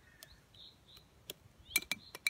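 A latex glove being fitted over the rim of a drinking glass, with a cluster of sharp clicks near the end. Birds chirp faintly in the background.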